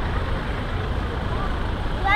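Steady low rumble of vehicle engines, with faint voices of people in the background.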